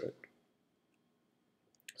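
Near silence between spoken phrases: a word ends right at the start, then comes a faint click about a quarter second in and short mouth clicks near the end, just before the voice resumes.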